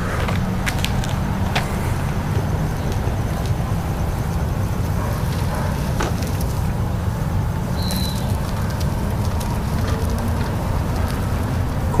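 Steady low rumble and hiss of a radio-controlled electric wheelchair's drive motors and wheels rolling along the asphalt, with a few faint clicks.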